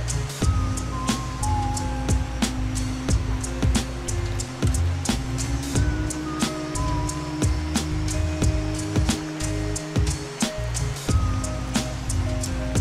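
Background music with a steady beat, held bass notes and a melody.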